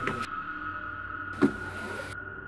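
Footsteps on wooden stair treads as a man climbs the steps: two thuds about a second and a half apart, the second the louder. A steady high note of background music is held underneath.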